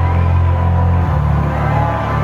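Electronic band playing live through a concert PA, recorded from the audience: deep, sustained synth bass notes under held keyboard tones, the bass moving to a new note about a second in.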